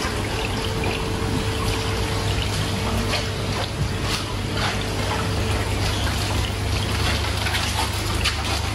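Water circulating through marine aquarium tanks: steady trickling and splashing over a continuous low hum.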